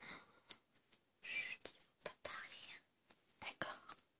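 Soft whispering in short, hushed breaths, with a few faint clicks between them.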